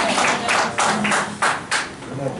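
Applause after the music, thinning out about a second in to a few separate claps.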